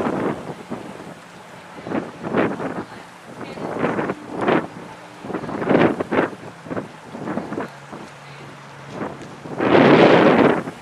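Wind buffeting the camera microphone in irregular gusts, the loudest one near the end. Under it runs a faint steady low hum of boat engines.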